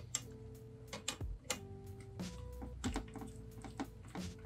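Background music of held, slowly changing notes, with irregular light clicks and taps throughout.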